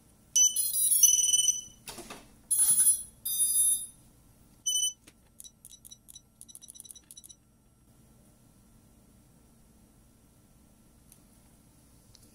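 High-pitched electronic startup beeps as a micro FPV quad is powered up. There is a short melody of stepped tones in the first two seconds, then a few single beeps, then a quick run of about eight short beeps just past the middle.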